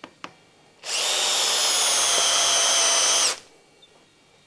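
Cordless drill boring a split-point metal twist drill bit into cast iron held in a vice: a steady high whine from about a second in, running for about two and a half seconds and stopping abruptly. A couple of short clicks come just before it starts.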